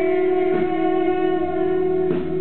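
Live rock band music: a single long note held steady through the whole stretch, with the band underneath.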